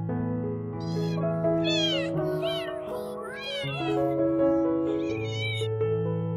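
A cat meowing over and over, a run of short meows that rise and fall in pitch, heard over gentle piano music.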